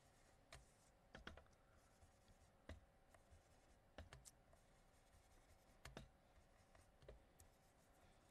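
Near silence with faint, scattered soft taps and scratches, about one a second: a blending brush dabbing and rubbing distress ink onto embossed die-cut cardstock. A faint steady hum lies underneath.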